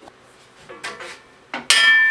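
Faint handling noises, then near the end a sharp metallic clank from the table saw's metal table and extension wing being struck, leaving a clear ringing note that fades slowly.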